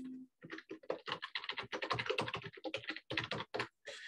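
Typing on a computer keyboard: a quick, irregular run of keystrokes lasting about three seconds, picked up by a microphone on the video call.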